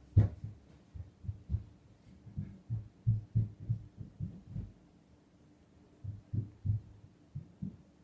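Muffled footsteps thudding through the floor as someone walks away from the room: a run of irregular low thumps that pauses about five seconds in, then a few more.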